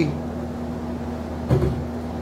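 Steady low room hum, with one brief soft thud about a second and a half in.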